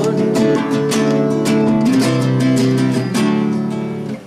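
Acoustic guitar strumming in a steady rhythm, an instrumental break between the sung lines of a song.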